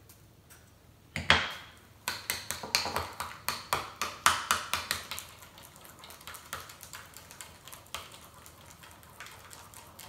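A spoon clicking against a small bowl while guacamole is stirred: one louder knock about a second in, then quick clicks, about four a second, which grow softer after about five seconds.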